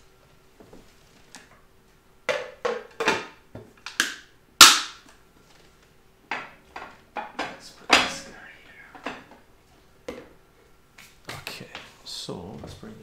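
Scattered sharp knocks and clatters of household containers and utensils being handled and set down. There are about a dozen of them, the loudest about four and a half seconds in and another strong one at about eight seconds.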